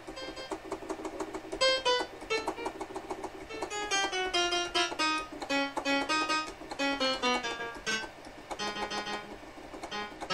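Roland D-70 synthesizer playing its grand piano patch through speakers. Single notes are played one after another, working down the keyboard to find which keys are dead.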